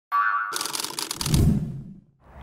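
Animated logo intro sting. A brief pitched tone gives way to a quick run of bright ticks over a low thud about a second and a half in, then fades out.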